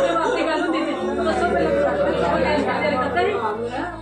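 Several women's voices at once: a woman crying out in grief while others speak over and around her.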